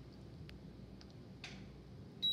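Quiet room tone with three faint, light clicks spaced about half a second apart.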